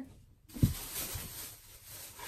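Thin plastic grocery bags rustling and crinkling as hands rummage through them, with a few soft thumps of items shifting inside.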